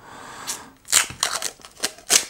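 Plastic wrapping being pulled off a new webcam, rustling and then crinkling in several short, sharp bursts.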